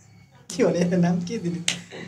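A single sharp finger snap about three quarters of the way through, over a man talking.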